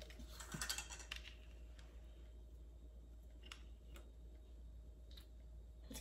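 Faint, scattered clicks and taps as a small bottle of vanilla extract is opened and handled: a cluster in the first second, then single ticks every second or so.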